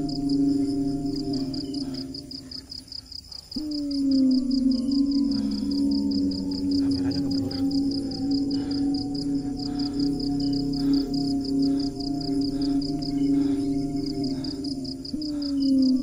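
Eerie ambient background music: a low drone that slides slowly downward, drops away about two seconds in and restarts abruptly a second and a half later, then restarts again near the end. Under it, a steady high, fast-pulsing chirp of insects such as crickets.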